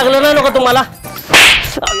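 A single loud slap, a hand striking a person, about a second and a half in. It is the loudest sound here and comes after a short vocal line at the start.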